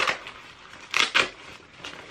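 Rustling and scraping of a foldable waterproof fabric bag being handled as a zipped compartment is opened: a brief scrape at the start and two more close together about a second in.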